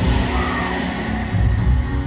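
Live stadium concert sound: a pop singer performing with guitar over a loud crowd, the crowd noise filling the sound evenly throughout.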